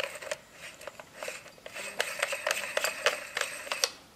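Metal T-thread adapter being screwed by hand onto a camera's T-ring: a run of small irregular clicks and scrapes from the threads, thicker from about a second in.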